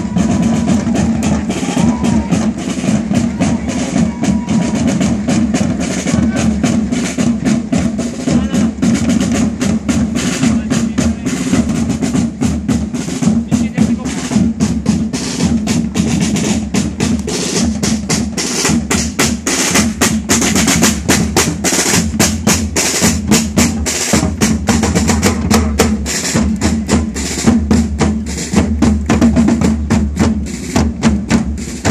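Marching parade drums of a historical drum corps played in a fast, continuous pattern with rolls. The strokes grow denser partway through.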